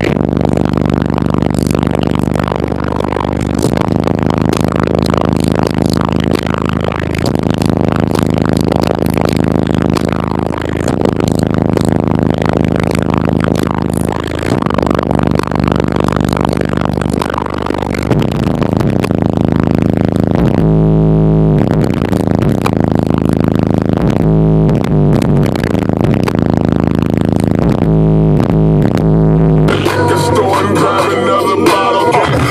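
Loud, bass-heavy music played through a car audio system with four Sound Qubed HDC3 18-inch subwoofers, heard inside the cabin. The deep bass notes are held and change every few seconds, with a choppier pulsing bass toward the end.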